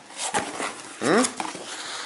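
Cardboard box being opened by hand: scraping and tapping of the flaps, with a short rising squeal about a second in.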